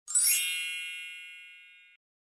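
A magical chime sound effect marking a character's transformation: bright, bell-like tones ring out together with a quick upward sparkle at the start, then fade away over nearly two seconds.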